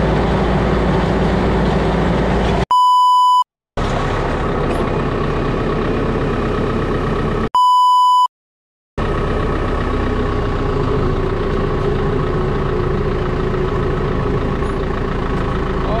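Tractor engine running steadily, interrupted twice by a censor bleep: a pure beep tone cutting in about three seconds in and again about eight seconds in, each followed by a moment of dead silence.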